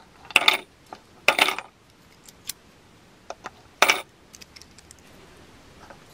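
Coins dropped one at a time through the slot of a small wooden bank, clinking as they fall inside: three sharp clinks, the last well after the first two, with fainter ticks between.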